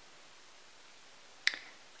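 Faint room hiss, then a single short, sharp click about one and a half seconds in that dies away quickly.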